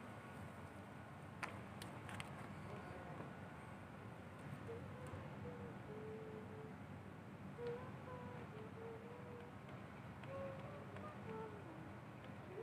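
Quiet night ambience: a low steady hum with faint, distant wavering voices from about the middle on, and two light clicks early on.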